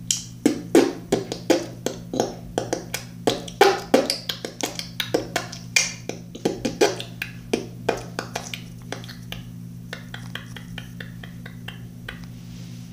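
Glue slime being squeezed and worked in the hands, giving irregular sharp pops and clicks. Near the end comes a quicker run of softer clicks.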